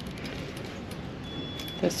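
Steady background noise of a retail store, with faint light clicks and rustles of shirts on hangers being handled on a clothing rack. A spoken word comes in right at the end.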